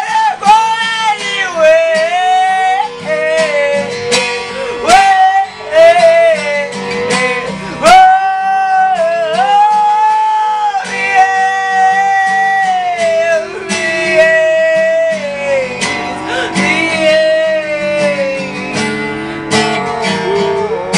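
A singer's high voice holding long notes that slide between pitches, over a strummed acoustic guitar.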